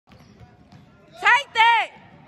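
A basketball dribbled on a hardwood gym floor, faint knocks at first. About a second in come two short, loud, high squeals, each rising then falling in pitch.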